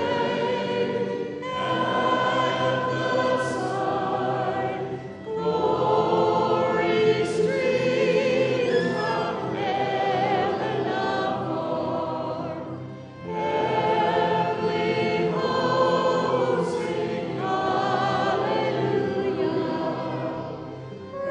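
A choir of voices singing together in long sustained phrases, with brief pauses for breath about five seconds in and again near thirteen seconds.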